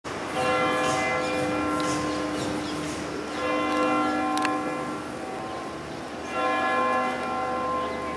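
Church bell of Saint-Sulpice tolling three strokes about three seconds apart, each ringing on and fading, over steady city traffic noise. A single sharp click comes about four and a half seconds in.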